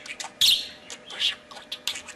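Budgerigar chattering in a rapid run of short, scratchy bursts, the loudest about half a second in.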